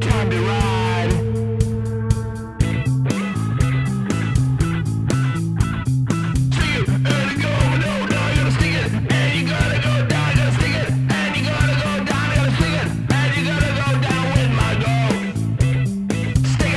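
Rock music with electric guitar, bass and a steady drum beat. A held low note for the first couple of seconds gives way to a bouncing bass line that steps between notes.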